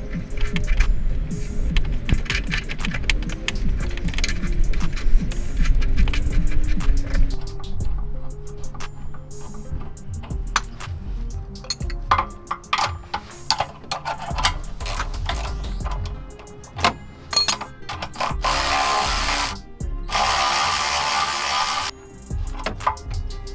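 A cordless electric ratchet runs in two short bursts near the end on the bolt at the inner mount of a VW Passat's front control arm, after a stretch of sharp clicking from tool work on the same bolt. Background music plays throughout.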